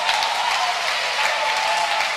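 Church congregation applauding steadily, with voices from the crowd mixed in.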